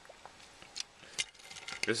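Small, sharp plastic clicks and clacks from a Transformers action figure being handled, its parts being moved and fitted, coming closer together in the second half.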